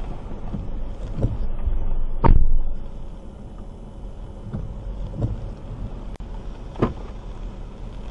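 Low, steady rumble of a car's cabin, with a few dull knocks; the loudest knock comes a little over two seconds in.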